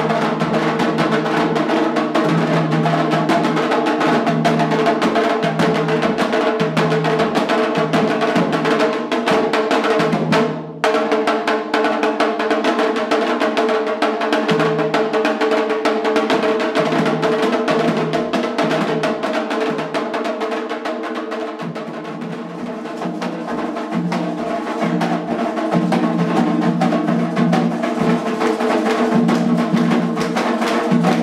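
Afro-Brazilian candomblé drumming music: hand drums played in a fast, steady rhythm. It breaks off briefly about eleven seconds in and dips a little in loudness later.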